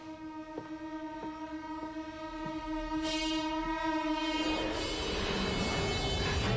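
A held, horn-like droning chord from a suspense soundtrack, with faint ticks roughly every half second. About four and a half seconds in, the chord gives way to a rising rush of noise that keeps swelling.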